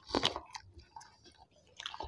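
Close-miked chewing of paratha and chicken curry: wet, squishy mouth sounds with short clicks. The loudest burst comes just after the start, and it is quieter through the second half.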